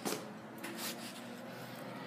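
Faint handling noise: a short knock at the start, then light rubbing and rustling as things on a wooden shelf are handled.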